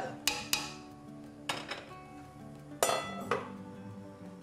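A serving ladle knocking against a stainless steel stockpot of stew, about five sharp, irregularly spaced clinks with a brief metallic ring, over soft background music.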